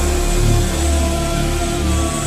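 Drift phonk music: heavy pulsing bass under held synth tones, with short falling pitch glides in the second half.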